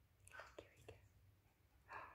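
Near silence with a few soft whispered words.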